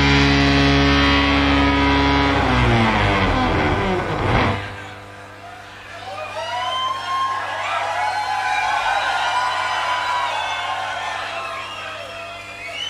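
A held, distorted bass guitar chord rings out, slides down in pitch and ends on a final hit about four seconds in, closing the song. The crowd then cheers and whoops.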